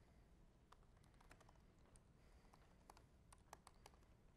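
Faint typing on a computer keyboard: irregular keystroke clicks, more of them in the second half.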